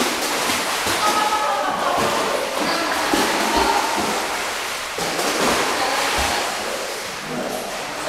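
Steady splashing and sloshing of pool water stirred up by dogs swimming through it.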